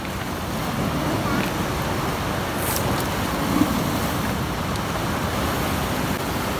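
Fast river water rushing steadily, with a few sharp clicks of stones knocked together near the middle as river stones are set in place.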